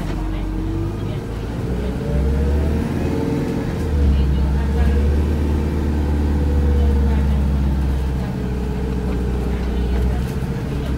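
Volvo B5LH hybrid bus's four-cylinder diesel engine and drivetrain heard from inside the lower deck while on the move: a deep drone that grows louder about two seconds in and again about four seconds in, then eases after about eight seconds, with a gliding whine above it.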